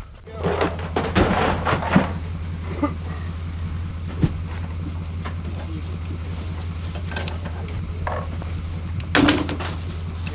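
Steady low hum of an idling engine, with hollow plastic goose decoys knocking and rustling as they are handled and loaded into a cargo trailer. The knocks cluster in the first two seconds and return now and then, louder again near the end.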